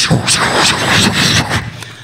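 A woman imitating the noise of busy highway traffic with her mouth into a microphone: a long breathy rushing noise that fades away toward the end.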